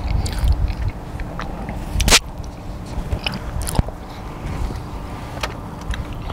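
A man chewing food close to the microphone, heaviest in the first second, with several sharp clicks; the loudest click comes about two seconds in.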